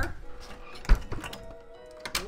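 A house door being pushed shut, closing with one sharp thunk about a second in, with a few small latch clicks around it. Faint background music plays underneath.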